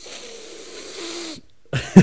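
A man's stifled, breathy laugh: quiet wheezing breaths for about a second and a half, then breaking into open laughter just before the end.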